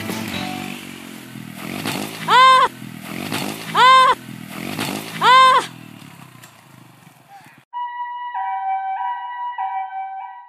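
A small motorcycle engine revving repeatedly, with three loud rising-and-falling wails about a second and a half apart. After a sudden cut near the end, a Japanese ambulance siren sounds its two alternating tones, pee-poo, pee-poo.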